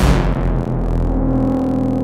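Electronic synthesizer soundtrack music: a deep, sharp hit at the start that slowly dies away over steady low synth drones, with a held mid-pitched synth note coming in just over a second in.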